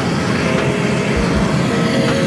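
Loud steady roaring noise on an open airport apron, with wind buffeting the microphone in a few low thumps.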